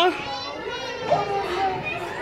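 Indistinct children's voices and background crowd chatter, with no clear words.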